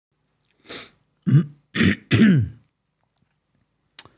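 A man clearing his throat close to the microphone: a faint breathy huff, then three rough voiced clearings about half a second apart, each falling in pitch. A single sharp click comes near the end.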